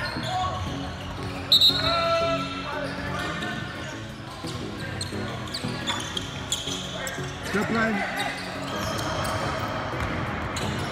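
Basketball game sound: spectators' voices and calls over a basketball and players moving on the court, with a sharp, loud sound about a second and a half in as a free throw is taken.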